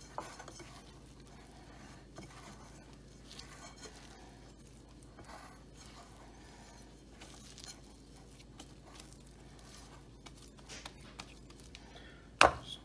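Faint soft scraping and squishing of a spatula stirring sticky bread dough in a bowl, with scattered light ticks, over a low steady hum.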